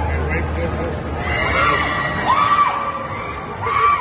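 Riders on a spinning amusement-park swing ride screaming over crowd noise, with long shrieks around the middle and again near the end. A low hum fades out about a second in.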